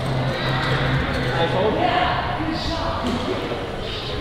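Indistinct voices with no clear words, over a steady low hum in the first second.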